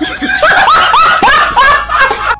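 A man laughing hard and loud, in a quick run of about six short, high-pitched rising cries.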